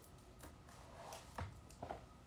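Quiet room with a few faint taps and clicks of small objects being handled, the clearest about halfway through and two near the end.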